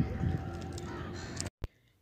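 Faint bird calls over outdoor background noise. They cut off abruptly about one and a half seconds in, leaving near silence.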